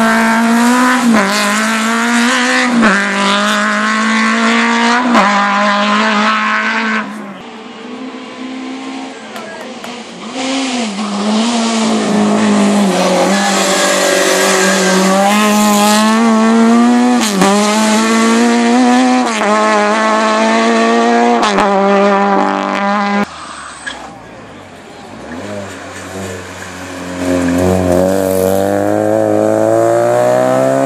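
Small hatchback race cars, among them a Zastava Yugo, accelerating hard uphill one after another, engines revving high with short dips in pitch at each upshift. The sound drops off between cars, and the next car's engine climbs in pitch near the end.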